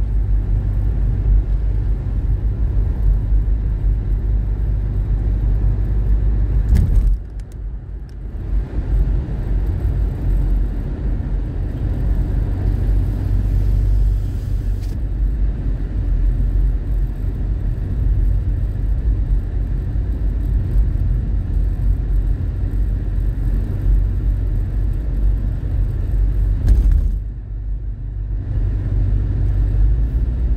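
Car driving at road speed, heard from inside the cabin: a steady low rumble of engine and tyres on asphalt. The rumble drops briefly twice, once about a third of the way in and again near the end.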